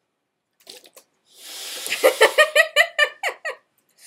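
A hiss that builds for about half a second, then a run of high-pitched, rhythmic laughter, about five pulses a second, that stops shortly before the end.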